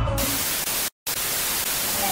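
TV-static sound effect used as an edit transition: a steady, even hiss of white noise, broken by a short dead-silent dropout about a second in before the hiss resumes.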